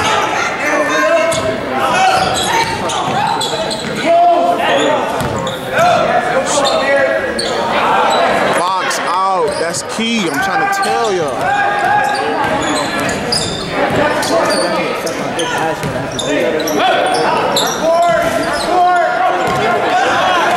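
Basketball game in a gym: a ball dribbling on the hardwood floor, with voices of players and spectators shouting, echoing in the large hall.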